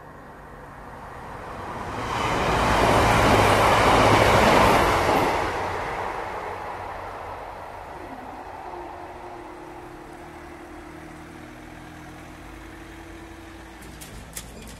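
A train passes at speed over the level crossing: its rush swells about two seconds in, is loudest for a couple of seconds, and dies away soon after. A quieter steady hum follows through the second half.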